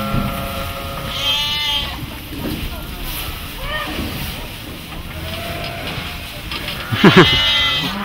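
Young cattle bawling: a long flat call at the start, a higher call about a second in, a few short calls in the middle, and a loud call near the end.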